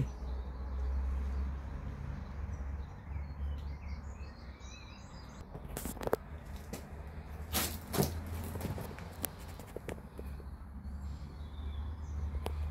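Quiet outdoor background: a steady low rumble with faint bird chirps, and a few sharp clicks about six and eight seconds in.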